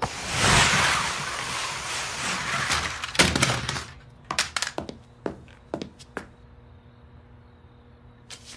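Cartoon sound effects: a loud rushing noise lasting about three seconds that fades out, then a knock and a scatter of light clicks and taps over quiet room tone.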